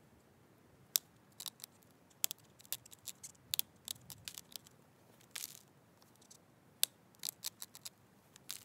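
Agatized coral point being pressure-flaked with an antler tool: an irregular string of sharp clicks and snaps as small flakes pop off the edge, with a short scrape about halfway through.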